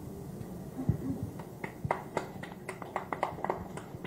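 A low knock about a second in, then a dozen or so sharp clicks at irregular intervals over the next two seconds or so.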